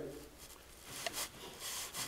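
Faint, irregular shuffling and scuffing of a person walking, with one soft click about a second in.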